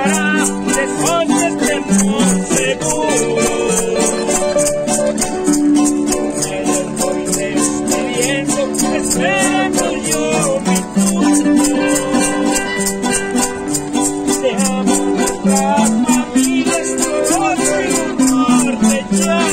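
Two acoustic guitars playing an instrumental passage, one strumming the rhythm while the other plays melodic runs, over a steady high rattling beat.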